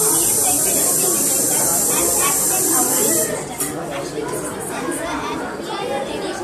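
Background chatter of many voices in a large hall, under a steady high hiss that cuts off suddenly about three seconds in.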